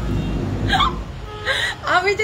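A woman's short, breathy laughs, two quick gasps about a second apart over a low rumble, then she starts speaking near the end.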